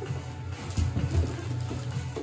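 Plastic wrapping crinkling and rustling as a wrapped object is pulled out of a cardboard box, loudest about a second in, over background music with a steady low bass.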